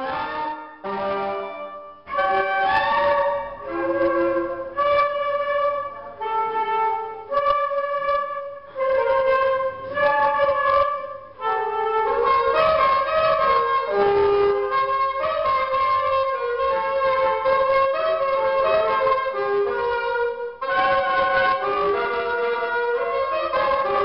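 A small student wind group of flutes, clarinet and alto saxophone playing a melody together. For roughly the first half it goes in short phrases broken by brief gaps, then the playing runs on without a break.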